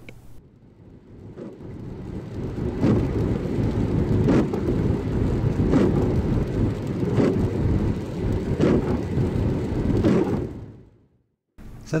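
Car driving through heavy rain, heard from inside the cabin: a dense low rumble of rain and road noise with a regular beat about every second and a half. It fades in at the start and fades out just before the end.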